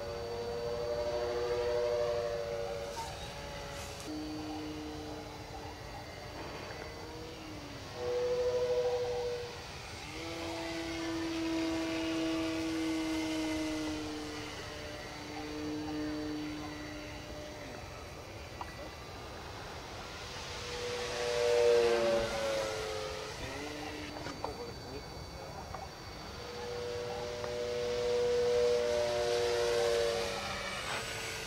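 A ParkZone P-51 Mustang electric RC model plane flying passes, its motor and propeller making a howling whistle whose pitch slides up and down as it dives, turns and climbs. The sound swells and fades with each pass and is loudest on a close pass about two-thirds of the way through.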